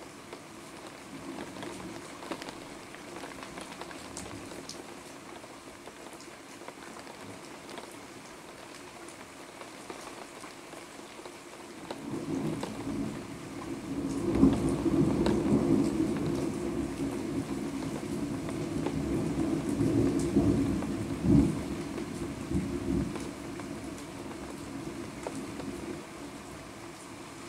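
Steady rain, then about twelve seconds in a long roll of thunder builds into a deep rumble, with a couple of sharper cracks near its peak, and dies away after about ten seconds.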